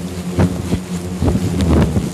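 A swarm of agitated hornets buzzing close around the microphone, the pitch rising and falling as they fly past, with a few short taps.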